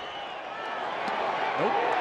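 Ballpark crowd noise rising steadily as a two-strike pitch comes in for the final out.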